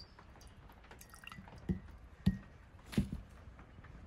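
A water-filled glitter tumbler being handled over a ceramic mug: about three separate, short drip- and knock-like sounds in the second half, one sharper click among them.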